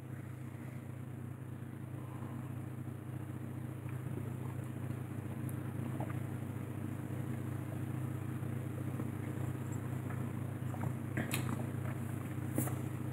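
Steady low hum of room background noise, with a few faint clicks near the end.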